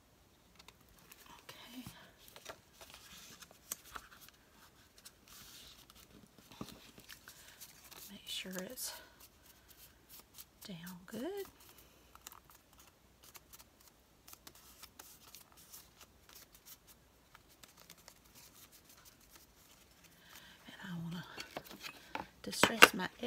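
Quiet handling of a folded piece of cardstock: faint rustles and small clicks as the paper is pressed and turned in the hands, with two short hums of voice around the middle.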